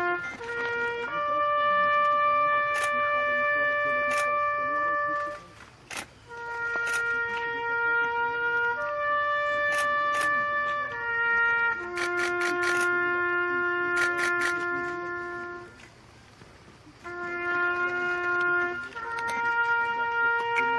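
Solo trumpet playing a slow memorial call for the fallen: single long-held notes that step between a few pitches, with two short breaths between phrases. Camera shutters click now and then over it.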